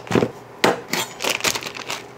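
Vacuum-seal plastic bags crinkling as blocks of smoked cheese are pulled out and set down on a wooden butcher-block board, with several dull knocks of cheese on wood.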